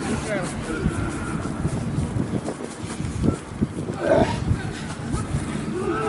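Shouted calls and chatter from several men over a steady background noise. A louder call comes about four seconds in and another near the end.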